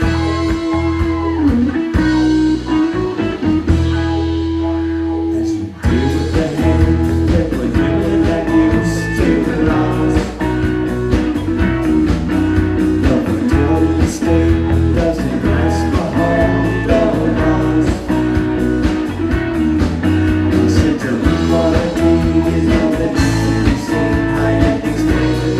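Live rock jam band playing an instrumental passage on electric guitars, electric bass and drum kit. The first several seconds are sparse, with a long sustained note over the bass, and the full band with drums comes back in about six seconds in.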